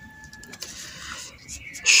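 Ballpoint pen scratching on paper in short strokes as a word is written by hand, with a man starting to speak near the end.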